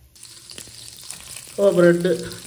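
Butter sizzling in a nonstick frying pan around slices of bread, a steady fine crackle. A man's voice comes in near the end.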